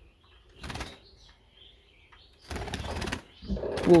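A budgerigar fluttering its wings inside a wooden cage: a short burst of wingbeats, then a longer one about two and a half seconds in, with faint soft chirps between.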